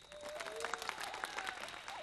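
Scattered applause from a small group clapping, denser at first and thinning out, with a faint voice underneath.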